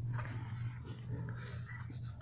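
A cat purring steadily, with brief scuffling on cardboard as a kitten squirms against its mother.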